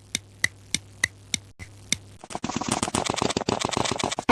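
Clock-ticking sound effect: sharp, evenly spaced ticks about three a second, then from about two seconds in a fast, dense rattling clatter.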